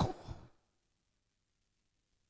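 A man's voice through a microphone trails off in the first half second, then near silence.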